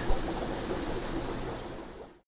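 Steady trickle and hiss of aquarium water running, fading out toward the end.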